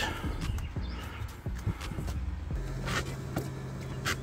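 Light rubbing and scattered soft knocks as a hand pushes on a rubber cargo mat. A low steady hum comes in a little past halfway.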